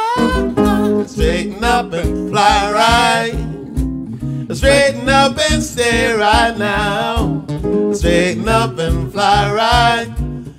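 Jazz guitar played on a double-neck archtop guitar, with a steady pulsing bass line, under a man's wordless scat singing.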